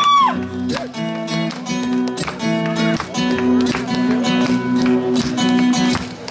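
Acoustic guitar strummed in a steady rhythm between sung lines, just after a held sung note ends at the very start.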